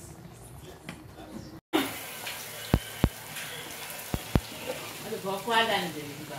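A spoon stirring shredded cassava in an aluminium pot, clinking sharply against the pot four times, over a steady sizzle of oil frying in a pan. The sizzle starts abruptly a little under two seconds in, after a low room hush.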